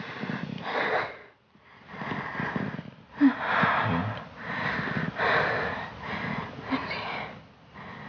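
A woman sobbing in ragged, breathy gasps, with a few short whimpering cries, as she cries out in distress while unconscious.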